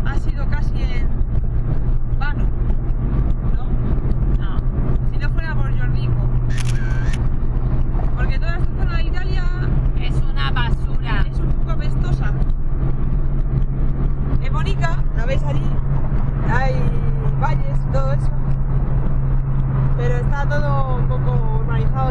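Steady low engine and road drone inside a small car's cabin at motorway speed, with two women's voices over it throughout.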